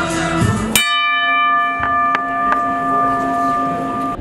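Boxing ring bell, a metal dome gong, struck with a wooden hammer. One hard strike comes about a second in, then three lighter strikes, and the bell rings on in several steady clear tones.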